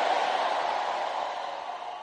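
A large church congregation shouting amen and cheering together in answer to a call for their loudest amen, a crowd noise that slowly fades.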